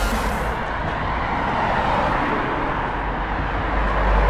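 Steady rushing outdoor noise with a low rumble underneath.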